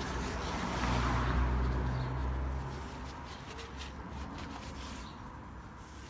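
The engine of a vehicle running close by: a low hum that swells about a second in and fades out by about three seconds. Faint rustling and small clicks come from paper towel and handling.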